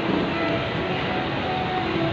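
Steady background din of a busy shopping mall, an even wash of noise with a few faint held tones in it.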